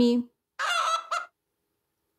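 A chicken's raspy squawking call: one drawn-out note followed by a short one, lasting under a second.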